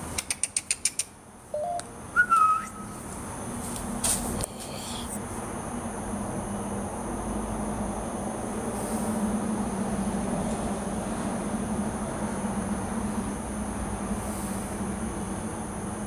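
A quick run of about eight clicks, then two short whistle-like tones and a single knock. After that a steady low hum with faint hiss lasts to the end.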